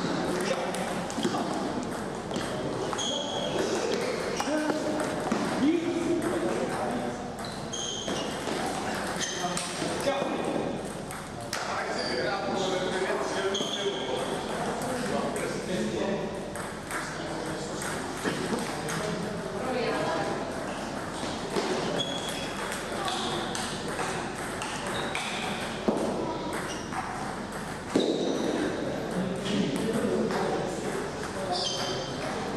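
Table tennis play in a hall: sharp clicks of celluloid-type balls off bats and the table, with short high pings scattered through. Indistinct chatter runs underneath.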